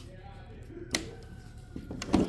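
A chuck key snapped into its holder on a DeWalt joist driller: one sharp click about a second in, amid faint handling of the tool.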